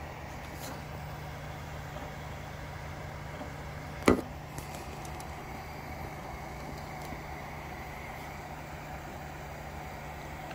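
Original Prusa XL 3D printer running a print, a quiet steady hum from its motors and fans as the printhead moves. A single sharp knock about four seconds in.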